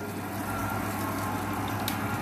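Batter dumplings deep-frying in hot oil in a kadai, a steady sizzle, with a steady low hum underneath and a faint click near the end.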